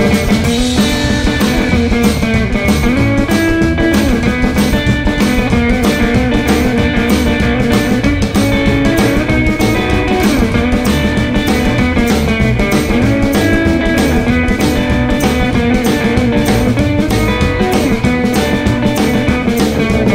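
Live band playing an instrumental break with no vocals: hollow-body electric guitar over upright bass and a steady drum-kit beat.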